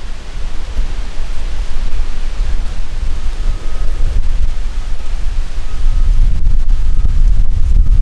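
Wind buffeting the microphone: a loud, steady low rumble that rises and falls.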